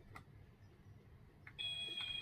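Toy kitchen oven switched on: a faint click, then about a second and a half in a steady, high electronic tone of two pitches sounding together starts and holds.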